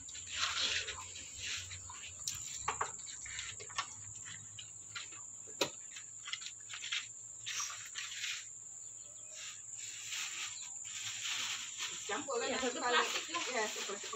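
Insects singing as one steady high-pitched drone, with faint voices and scattered light rustling and knocks over it; the voices grow a little louder near the end.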